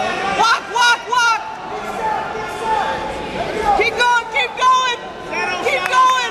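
Several people shouting and calling out in a gym hall, short loud calls coming one after another throughout.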